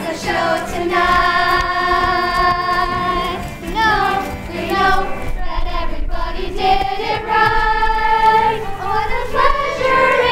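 A chorus of young voices singing together, with several long held notes.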